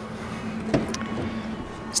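Electric motor of a pickup's power running board humming steadily, with a single click about three-quarters of a second in. The step starts to retract and then stops short of going up.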